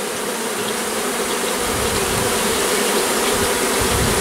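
A large honey bee colony buzzing around and over an open hive box: a dense, steady hum from thousands of bees stirred up by a cutout and being hived into a new box.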